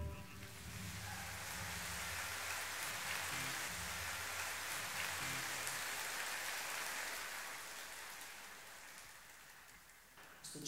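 Audience applause after the song ends, fading away over several seconds, with faint low held tones underneath.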